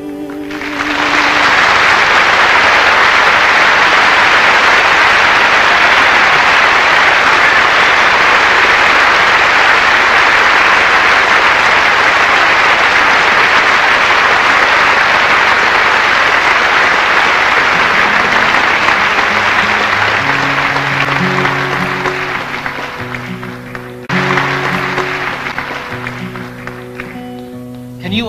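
Live concert audience applauding loudly, the applause dying away over the last part. Soft sustained instrumental chords come in underneath it.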